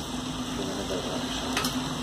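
Low, steady sizzle of mutton and onions frying in hot mustard oil in a clay handi.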